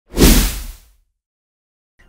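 A single whoosh sound effect with a deep low end, swelling in quickly and fading out by about a second in. It is followed by silence.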